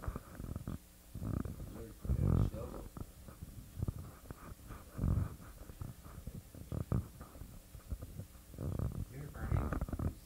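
Low, indistinct murmured voices in the room, in irregular bursts, mixed with low rumbling noises.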